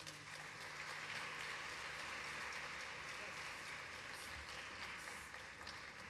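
Audience applauding, fairly faint, swelling over the first second or so and then slowly dying away.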